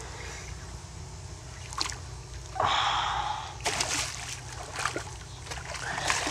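A hooked sheepshead splashing at the surface beside a kayak, in scattered short splashes over the second half. A hard breath is heard about two and a half seconds in.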